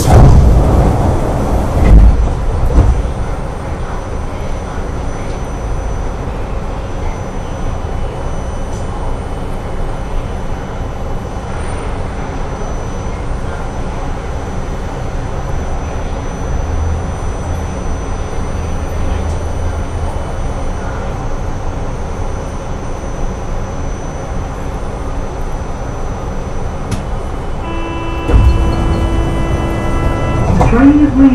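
Steady hum of the O'Hare airport tram car standing at a station stop, with a few low thumps in the first seconds. Near the end a steady multi-tone chime sounds, the departure warning, followed by louder low noise.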